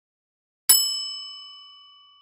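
A single bell-like ding sound effect, struck about two-thirds of a second in and ringing on as it slowly fades, with silence before it.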